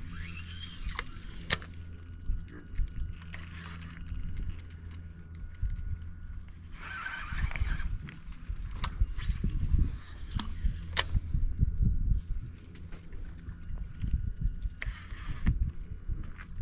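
Low steady engine hum, with a few sharp clicks and short bursts of rustling noise.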